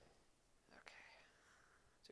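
Near silence, with a faint whisper or breath about a second in.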